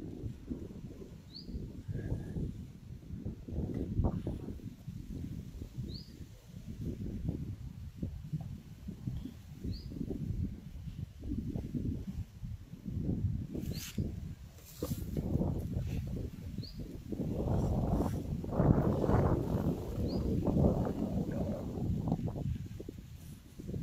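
Wind noise on the microphone, uneven and gusting louder near the end, with a small bird giving a short rising chirp every few seconds.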